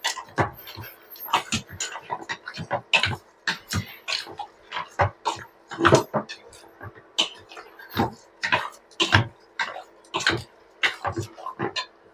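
Raw pork chunks being mixed by hand with seasonings in a stainless steel pot: irregular squishing and knocking, two or three sounds a second.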